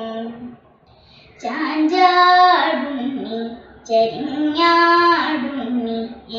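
A young girl singing a Carnatic-style song without accompaniment. She pauses for breath about a second in, then sings two phrases, each rising to a long held high note.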